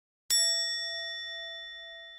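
A single bell-like chime struck once about a third of a second in, its clear ringing tones slowly fading away.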